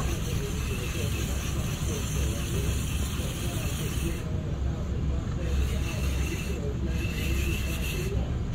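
Baitcasting reel cranked steadily by hand, its gears whirring as line winds onto the spool under light tension.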